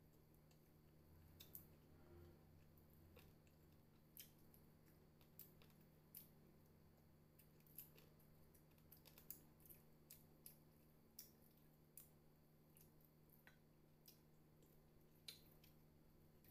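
Faint, scattered crackles and clicks of crispy fried chicken being pulled apart by hand and chewed, a couple of sharp ticks a second at irregular intervals.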